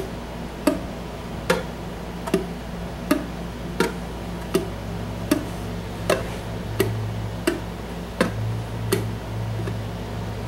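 Ukulele strings plucked while held dead (muted), so each note is a short, dry click with no ring, the 'popcorn sound'. The 3/4 finger-picking pattern is played slowly and evenly, about one pluck every three-quarters of a second: a thumb-and-ring pinch on the outer strings, then the second string, then the third.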